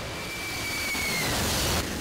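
Jet airliner passing low overhead on landing approach, its landing gear down: the engine noise swells, and a high thin whine bends down in pitch about a second and a half in as it goes by.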